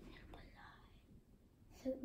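Faint whispered speech, then a spoken word near the end.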